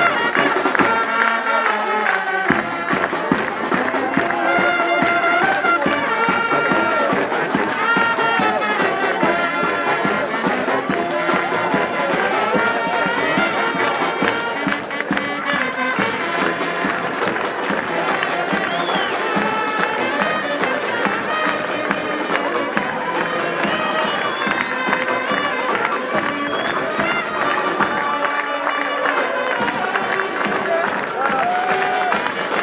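A brass band of saxophones, sousaphone and drums plays a lively tune with a steady beat, with a crowd cheering underneath.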